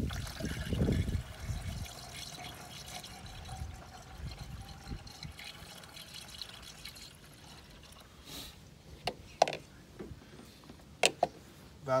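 Antifreeze poured from a plastic gallon jug through a funnel into an engine's coolant reservoir: louder in the first couple of seconds, then a steady trickle. A few sharp clicks come near the end.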